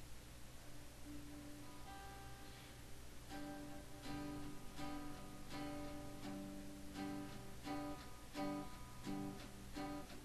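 Acoustic guitar playing the intro of a country song: a few notes come in about a second in, then it settles into an even, steady strum from about three seconds in. A low steady hum sits underneath.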